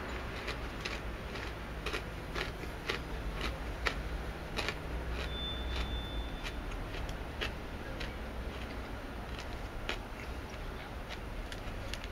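Chewing a crunchy honeycomb chocolate bar: faint, irregular crisp crunches, about two a second, against a steady low background hum.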